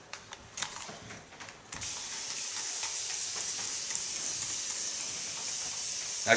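Hand-held plastic spray bottle misting water onto hair in one steady, continuous hiss that starts about two seconds in, after a few soft rustles and small clicks.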